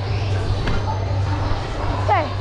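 Busy trampoline park hall: distant children's chatter and faint background music over a steady low hum, with a single knock less than a second in.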